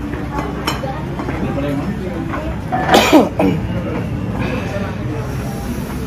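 Chatter and dining-room noise, with one short, loud vocal burst about three seconds in.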